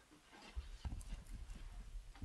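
Footsteps walking across a room: a run of soft, uneven low thuds starting about half a second in.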